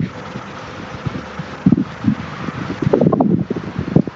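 Wind buffeting the microphone: a steady hiss, then heavier irregular low gusts through the second half.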